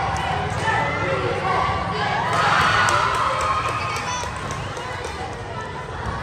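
Spectators at a basketball game talking and shouting over one another, the crowd noise rising about two seconds in and easing off toward the end.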